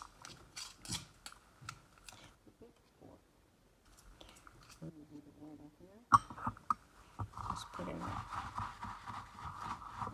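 Spoon scooping and stirring through dry rolled oats in a mixing bowl: a run of light clicks and scrapes, a sharp knock against the bowl about six seconds in, then more continuous scraping over a steady hum.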